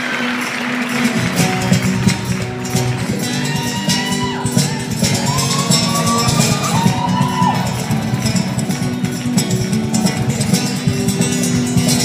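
Acoustic guitar strummed live in a steady rhythm, ringing in a large gymnasium, with a few brief gliding pitched calls over it in the middle.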